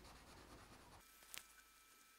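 Near silence with faint scratching of a felt-tip marker on paper as black ink is filled in, and one light tick a little past the middle.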